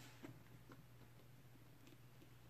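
Near silence: room tone with a steady low hum and a few faint ticks.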